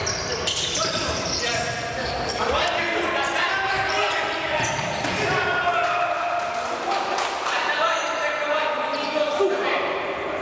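Indoor futsal game in a reverberant sports hall: players' shouts and calls over each other, with sharp knocks of the ball being kicked and hitting the hard court.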